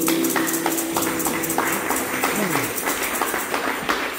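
A congregation applauding: many irregular hand claps in a large hall, with a few voices among them.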